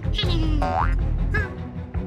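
Background music for a children's cartoon with cartoon sound effects over it: a few squeaky chirps, then a short rising springy effect about two-thirds of a second in.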